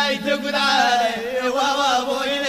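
Amazigh folk song: a voice sings a long, ornamented line with wavering pitch over a steady low note, the drums falling silent for a moment.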